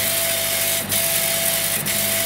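Chinese CO2 laser cutter raster-engraving a photo, its head scanning back and forth: a steady motor whine on each pass that breaks off with a short knock as the head reverses, about once a second, over a steady hum and hiss.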